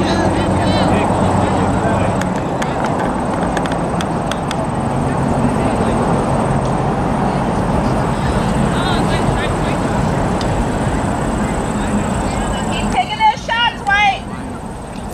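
Steady rushing rumble of a passing vehicle that fades out near the end, with short shouts from the field near the end.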